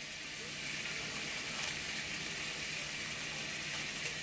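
Steak fat frying in olive oil in a pan, a steady sizzle.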